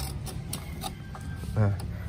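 Front brake cable housing of a Vespa PX being pushed up through a hole in the handlebar headset: a few faint clicks and scrapes of the cable against the metal.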